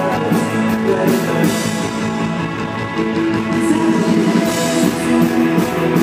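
Rock band playing live: electric guitar chords over bass guitar and a drum kit, heard from the audience in a concert hall.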